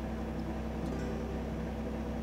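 Light aircraft's piston engine idling while holding short, a steady low hum with a few steady engine tones.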